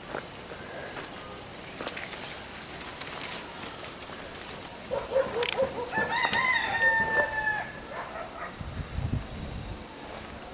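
A rooster crowing once, starting about five seconds in and lasting nearly three seconds, ending in a long held note.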